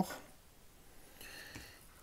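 Mostly quiet, with faint handling noise of a plastic watch-case holder and tools in a fabric tool case: a brief soft scrape or rustle a little past a second in.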